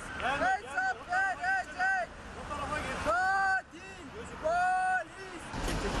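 A man shouting in loud, high-pitched cries: a quick run of short shouts, then two longer, drawn-out ones.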